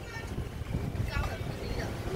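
Faint, brief bits of background speech over a steady low rumble.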